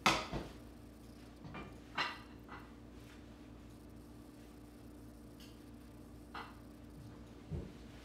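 Frying pan and plate handled at a kitchen counter: a sharp clink as the pan's edge meets the plate at the start, a few soft knocks about two seconds in, and a low thump near the end as the pan is set back down on the stove, over a steady low hum.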